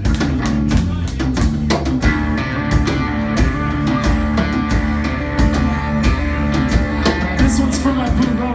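Live rock band playing: electric guitar, bass guitar and drum kit, with steady drum hits throughout and sustained guitar chords ringing from about two seconds in.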